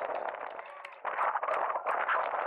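Inline skates rolling over the road surface, a dense rumble with many sharp clacks, with voices mixed in.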